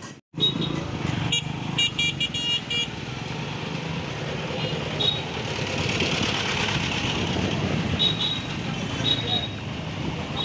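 Busy road traffic at a crowded crossing: a steady run of engines and street noise with repeated short high-pitched horn beeps, a quick cluster of them between about one and three seconds in and single toots later on. There is a brief dropout at the very start.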